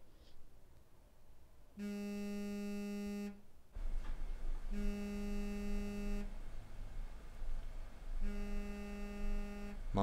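A steady, low, buzzy electronic tone sounding in identical notes about a second and a half long, roughly every three and a half seconds, three times in all; a low hum and room noise come in about four seconds in.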